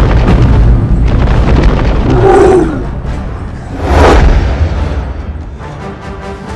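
Dramatic film soundtrack music with a loud, deep booming rumble that stays strong through the first seconds. A deep pitched cry rises and falls about two seconds in, a second loud burst comes at about four seconds, and then the sound fades.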